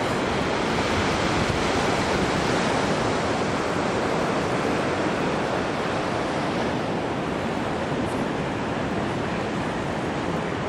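Ocean surf breaking on the beach: a steady, unbroken wash of noise.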